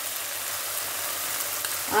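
Onion-tomato masala sizzling steadily in hot oil in a pan, a continuous hiss with a few faint ticks. The masala is fried until its oil has separated.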